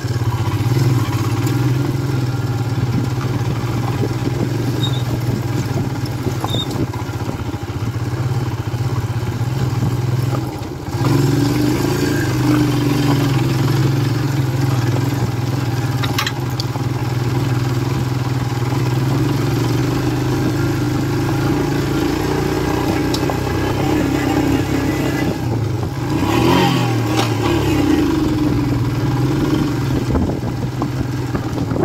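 Royal Enfield Himalayan's single-cylinder engine running at steady throttle while riding a dirt trail. The engine note drops briefly about ten seconds in, then picks up again. Near the end its pitch falls and rises again.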